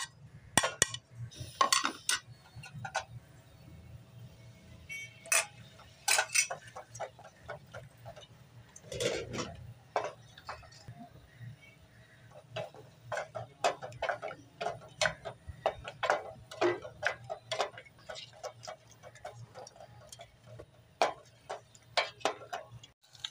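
Wooden spoon stirring mutton in a metal pot, knocking and scraping against the pot in irregular clicks, as the meat is fried with yogurt and ginger-garlic paste; a low steady hum runs underneath.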